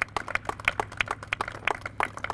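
Sparse applause from a small group of people, the separate hand claps heard distinctly rather than as a continuous wash, over a steady low hum.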